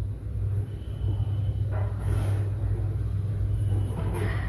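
A steady low rumbling hum runs throughout, with a faint thin high tone for about a second early on.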